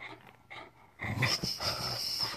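Small dog playing with a ball held in a person's hand, making dog play noises through its mouth and nose; it is quieter at first and gets louder about a second in.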